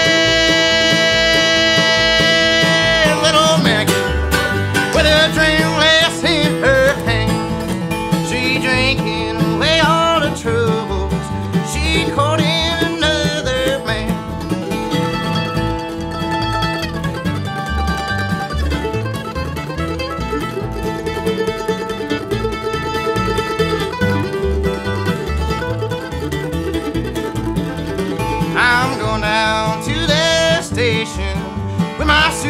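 Live acoustic bluegrass trio of steel-string acoustic guitar, mandolin and upright bass, with a male lead vocal. It opens on a long held sung note, the singing runs on through the first half, there is an instrumental stretch in the middle, and the singing comes back near the end.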